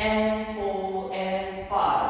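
A voice holding one long chanted note that steps down slightly in pitch, followed by a short rushing, breathy sound near the end.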